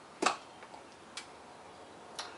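A single short, light click about a second in: the lid of a small plastic tub of Al Fakher shisha tobacco coming off.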